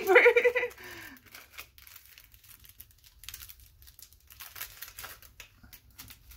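A short laugh, then faint, scattered rustling and crinkling of paper as hands press and shift sheets of paper on a cutting mat.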